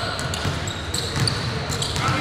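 Basketball being dribbled on a hardwood gym floor, with irregular thuds, short high sneaker squeaks and players' voices in the background.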